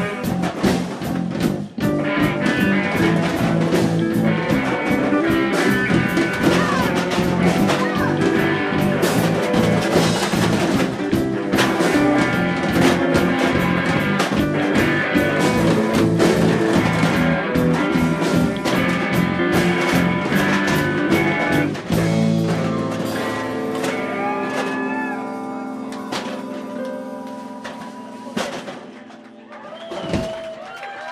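Indie rock band playing live: electric guitars and a drum kit, loud and busy. About three quarters of the way through the drums stop and the guitars hold ringing chords that fade out near the end as the song finishes.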